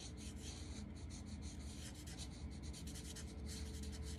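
Black Sharpie marker rubbing on paper in many quick short strokes as it colours in a small dark area; faint, over a steady low hum.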